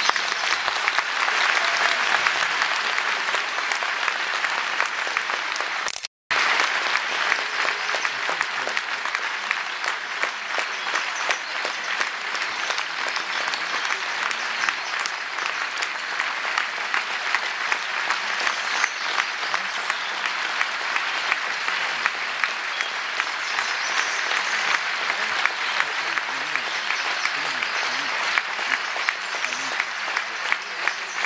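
Large theatre audience applauding in a steady, sustained ovation after a song, with a brief dropout of the sound about six seconds in.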